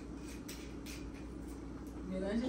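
Faint light clicks and scratches, about three a second, over a steady low hum: small handling sounds of kitchen work at a counter.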